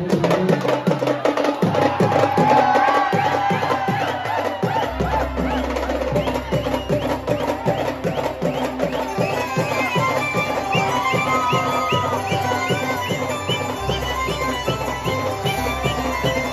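Live Mumbai-style banjo band playing: a fast, steady beat on drums and cymbals under a melody line, with a deep bass line coming in about five seconds in.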